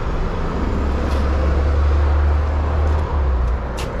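City street traffic: a low vehicle rumble, loudest from about half a second to three seconds in, over steady road noise.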